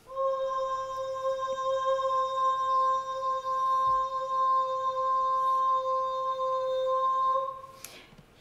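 Recording of a soprano holding a single sung C5 with no vibrato: the pitch stays dead straight for about seven and a half seconds, then stops.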